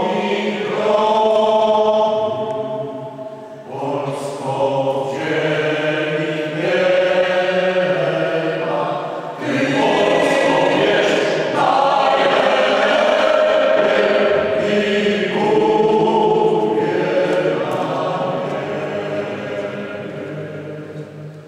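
Mixed choir singing a cappella in long sustained phrases, with brief breaks between phrases about every five to six seconds.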